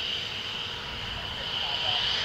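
F-15 fighter jet's engines running with a steady high-pitched whine.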